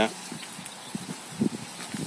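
A few soft footsteps on a concrete path, over a faint steady outdoor background.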